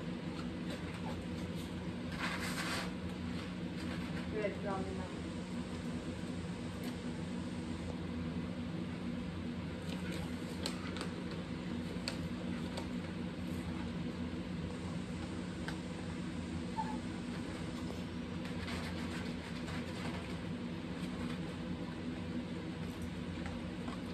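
Two dogs eating dry kibble from plates, with faint scattered crunches and clicks over a steady low hum.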